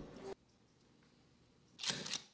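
A judge's gavel bang, deep in the low end, dying away within the first third of a second. Near the end comes a single sharp thump of a rubber stamp brought down on a paper form.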